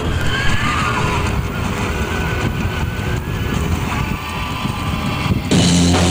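Live stoner rock band's intro of distorted electric guitar noise and feedback, with wavering, gliding pitches over a low rumble. The full band with drum kit comes in hard about five and a half seconds in.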